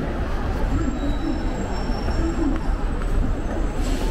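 Steady city street traffic noise with a low rumble, a bus among the traffic, and a murmur of crowd voices. A faint thin high whine runs through the middle of it.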